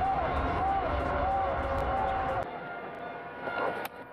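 Stadium PA music with heavy bass and a sung melody over crowd noise, celebrating a six; it drops away about two and a half seconds in, leaving a quieter crowd hum.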